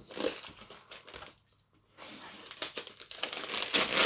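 Brown paper parcel wrapping and packing tape being torn and crinkled open by hand. There is a brief lull about halfway, and the crinkling is loudest near the end.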